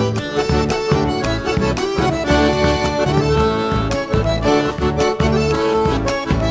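Instrumental chacarera folk music: a held, sustained melody over repeated bombo drum beats.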